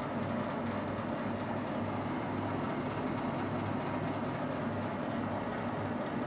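Steady room noise with a low, even hum, and no distinct events.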